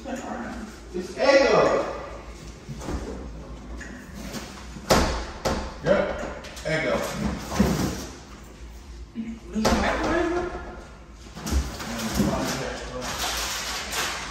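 A refrigerator door being opened, with a few sharp knocks and clunks, under low, indistinct talk.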